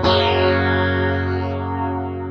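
Electric guitar through the Axe-FX III's flanger: a chord is struck once at the start and left ringing. Its tone sweeps down and then back up as the flanger moves.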